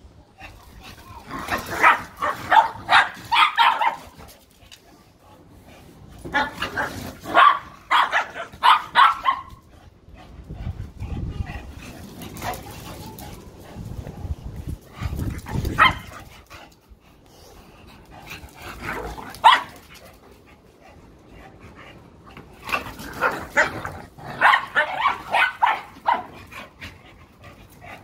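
Dogs playing, with barks coming in quick runs of several at a time, each run lasting two or three seconds and three such runs in all, plus a couple of single barks in between. Quieter low sounds fill the gaps between the runs.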